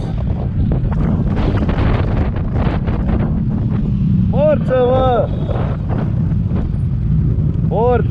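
Wind buffeting the camera microphone on an exposed ridge, a steady low rumble with gusty rustling, broken by a short call from a man's voice about four and a half seconds in.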